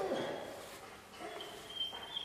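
German Shepherd puppy whining softly while it waits on a treat. It is a thin, high whine that grows a little stronger in the second half, with a couple of faint lower whimpers just past the middle.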